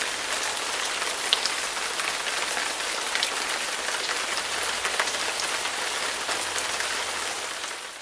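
Steady rain-like hiss with scattered light ticks, fading out near the end.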